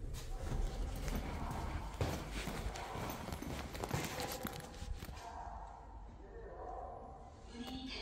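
Footsteps on a hard floor as a person walks out of an elevator car into the lobby, a quick run of steps with handling knocks that dies down about five seconds in.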